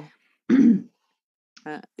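A person clearing their throat once about half a second in, then a brief cough near the end.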